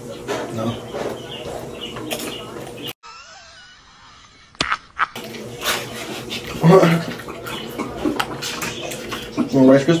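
Low, indistinct talk in a small room. About three seconds in, a two-second cut drops out the room sound, leaving only a faint, thin wavering sound, before the talk resumes.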